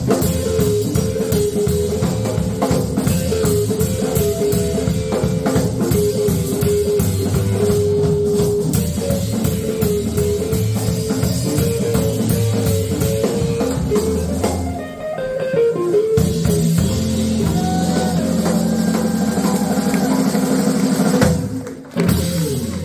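Live electric blues band, two electric guitars and a drum kit, playing an instrumental passage. About fifteen seconds in there is a short break with bent guitar notes, then the band holds a long closing chord and stops sharply near the end, finishing the song.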